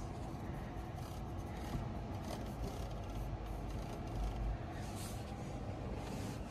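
Steady, low-level noise inside a car cabin, most likely the climate control fan blowing through the dashboard vents, with a faint low hum underneath.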